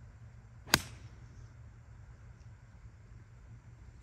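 An eight iron striking a golf ball on a tee shot: a single sharp click about three quarters of a second in.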